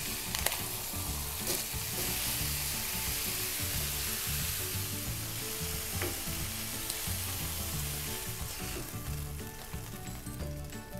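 Pork chops sizzling steadily as they brown in butter in a skillet, with a few sharp clicks of the tongs as they turn and lift the chops.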